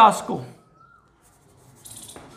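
Chalk scratching on a blackboard as a number is written, starting near the end after a short quiet spell.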